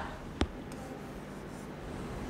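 Marker pen writing a numeral on a worksheet: a single click about half a second in, then faint scratching of the tip.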